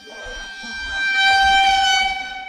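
A single long horn-like blast on one steady pitch, swelling in about half a second in and holding loud.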